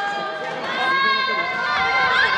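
A group of young women wailing and squealing together, several high, drawn-out voices overlapping.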